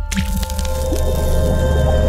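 Logo intro sting: a wet splat sound effect near the start, over music with a steady deep bass and held higher notes.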